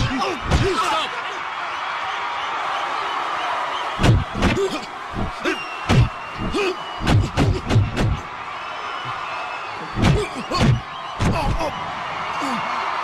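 Punch and kick impact sound effects for a film fight: heavy thuds and smacks in quick clusters, about four or five bursts of blows, over a steady crowd din.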